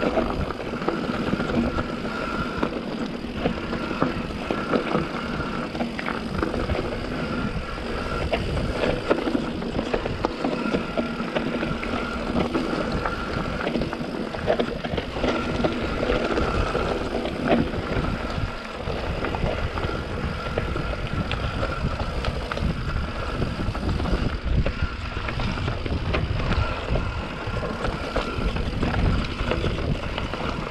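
YT Capra mountain bike descending a dirt forest trail, heard from a camera mounted on the bike: tyres rolling over dirt and roots, the frame and parts rattling over bumps, and wind on the microphone. A high buzz comes and goes throughout.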